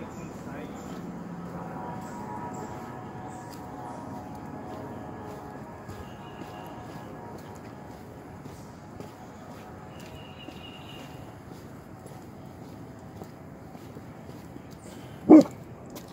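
A dog barks once, sharp and loud, near the end, over steady outdoor background noise.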